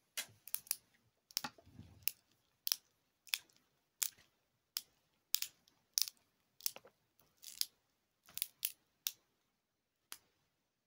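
Glow sticks being bent and cracked: a run of sharp crackling snaps, roughly one every two-thirds of a second, some coming in quick pairs.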